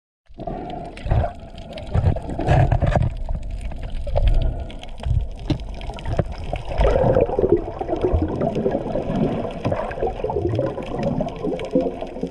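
Water sloshing and bubbling heard underwater, muffled and mostly low, with irregular low thumps and faint clicks throughout.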